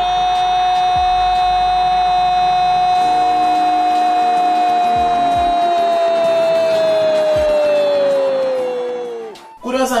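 A football TV commentator's long drawn-out "gooool" goal shout, held on one steady note for about nine seconds, then sliding down in pitch and breaking off near the end.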